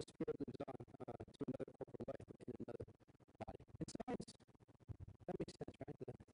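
A man's speech broken up by rapid audio dropouts, several cuts a second, so it comes through as a choppy, scratchy stutter with no clear words.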